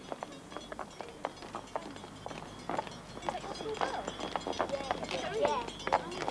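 Footsteps of a small group walking on a pavement, with children's voices chatting faintly in the second half. A school bell rings faintly in the distance.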